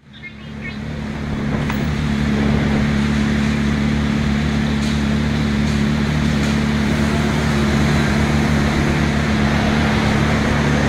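Motorcycle engine idling steadily. It comes up in level over the first two seconds, then holds an even hum.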